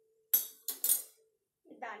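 Stainless-steel sieve knocking against the rim of a steel pan: three quick metal clinks with a short ring, all within about half a second, as the fried peanuts in it are drained of oil.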